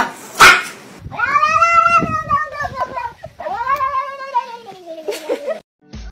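A sharp, loud burst about half a second in, then two long, drawn-out meow-like wails, each rising and then falling in pitch, the second sliding lower at its end.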